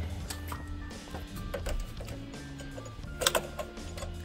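Plastic clicks and clatters of a 60-amp two-pole circuit breaker being handled and pressed onto the bus of a breaker panel, with a sharper, louder click about three seconds in as it is pushed into place.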